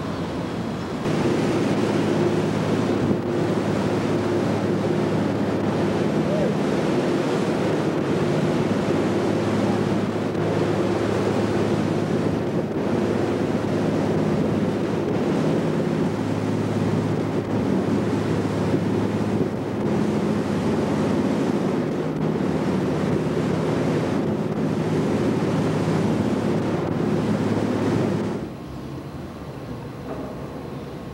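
Wind buffeting the microphone over rushing water, with a steady low engine hum, as heard on the deck of a boat under way. It starts about a second in and cuts off sharply near the end.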